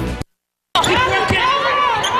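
Basketball game court sound: sneakers squeaking on the hardwood and a ball bouncing amid arena noise. It starts after a short gap of silence, about three quarters of a second in.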